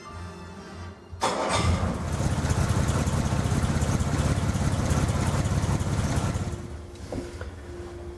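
Jaguar E-type's 3.8-litre straight-six engine starting suddenly about a second in and running with a fast, even beat. It fades out near the end, and soft music is heard before it starts.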